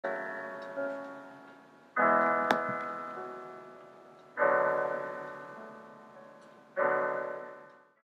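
Piano chords struck four times, about two seconds apart, each left to ring out and fade. A single short click sounds during the second chord.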